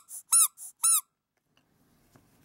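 Squeaker inside a soft vinyl Dadandan squeeze-toy figure squeaking as its belly is pressed: about three short squeaks, roughly two a second, each rising then falling in pitch, stopping about a second in.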